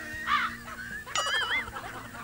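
A woman laughing in short rising-and-falling bursts, with a high wavering squeal about a second in. Faint background music runs underneath.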